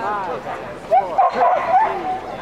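A dog giving a quick run of high-pitched yips and barks, loudest and densest from about a second in.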